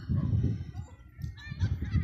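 Low rumble of wind on the microphone, with a bird calling briefly in the background a little past halfway.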